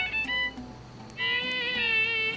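Solo violin: a few quick bowed notes, a brief drop in level, then about a second in a long high note held on the bow with a slight slide in pitch.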